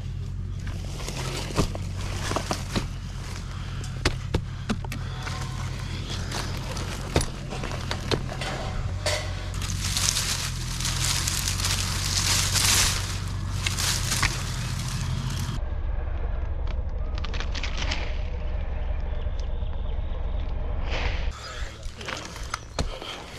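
Leaves and twigs brushing and rustling close to a tree climber's body-mounted camera, with scattered clicks and knocks from handholds on bark and branches, heaviest between about 9 and 15 seconds in, over a steady low hum that changes suddenly about two-thirds of the way through.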